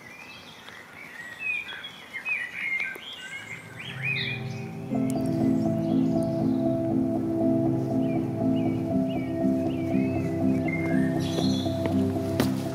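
Songbirds singing outdoors, with intro music of held chords fading in about four seconds in and carrying on under the birdsong.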